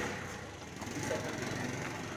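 Faint street background noise with a low, steady hum and no distinct event.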